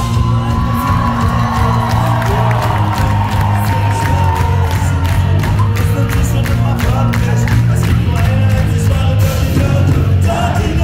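A punk rock band playing live at full volume through a club PA, heard from inside the crowd: heavy bass, driving drums and guitars. A long high note is held over the first few seconds, and the crowd whoops and shouts along.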